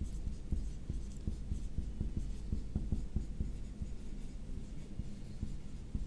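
Marker pen writing on a whiteboard: a quiet, continuous run of short strokes and taps as a word is written out letter by letter.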